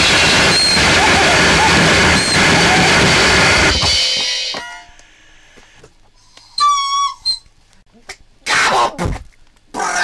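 Harsh noise music: a loud, dense wall of distorted noise breaks off about four seconds in. A quieter stretch follows, with a short high whistling squeal around seven seconds and a few brief loud noise blasts near the end.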